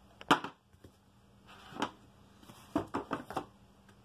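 A handful of sharp knocks and clatters from objects being handled and set down: the loudest about a third of a second in, another near the middle, then a quick run of lighter taps near the end.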